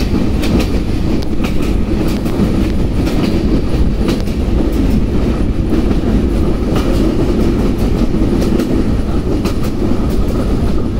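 Passenger train running at speed, heard from aboard: a steady, loud low rumble of the carriage with irregular sharp clicks of the wheels over the rail joints.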